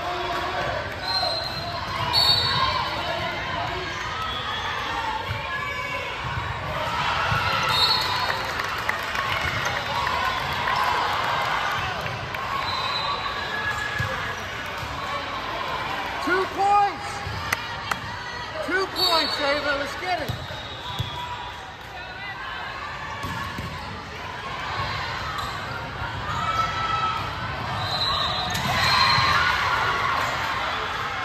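Volleyball game sounds in a large, echoing gym: the ball bouncing on the hardwood floor and being struck, with players' and spectators' voices calling out.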